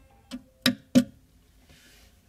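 Three sharp clicks about a third of a second apart, the last two loudest, as the power button on a Realan H80 mini-ITX case is pressed to start the PC, picked up by a microphone set right beside the case.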